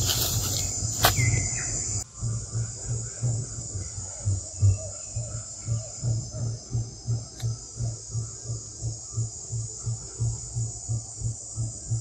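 Steady high-pitched drone of a forest insect chorus. A low throb repeats under it about three times a second. In the first two seconds louder rustling noise and a few sharp knocks cut off abruptly.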